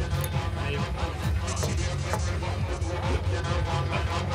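Music with a strong, steady bass.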